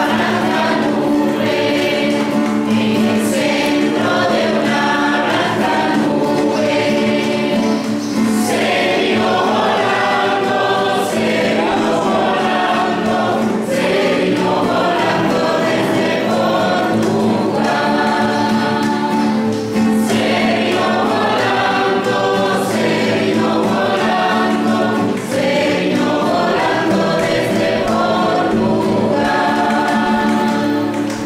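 A choir singing a sacred song over a steady held low note.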